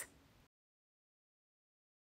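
Silence: the soundtrack is completely empty after the tail of a spoken word fades in the first half second. The mixer seen working is not heard.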